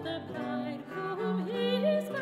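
Soprano singing with vibrato, accompanied by lute and bass viol. Her line rises and swells near the end.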